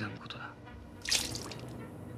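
A short splash of water from a small drinking glass about a second in, in a quiet room, after the last word of a man's line.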